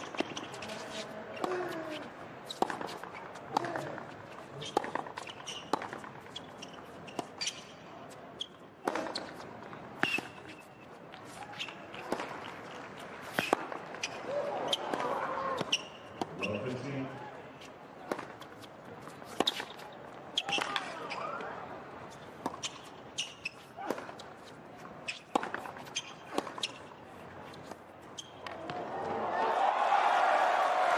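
Tennis ball struck back and forth in a long rally on a hard court: sharp racquet hits and bounces about once a second over crowd murmur. Applause swells up near the end as the point finishes.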